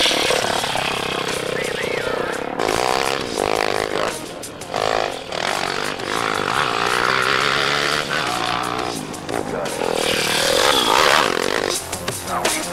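Coolster pit bike engine revving up and down as the bike is ridden hard, its pitch rising and falling through the gears.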